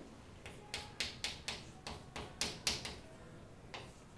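Chalk writing on a chalkboard: a run of sharp, irregular taps and short scrapes as each stroke lands, about ten in a few seconds.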